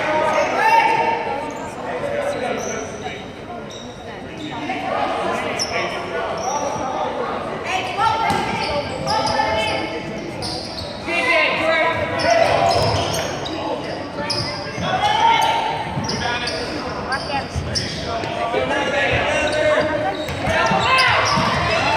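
Basketball bouncing on a hardwood gym floor and sneakers squeaking during play, under the voices of spectators and players, all echoing in a large gym.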